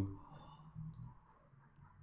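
Two faint computer mouse clicks about a second apart, selecting and opening items in a file dialog.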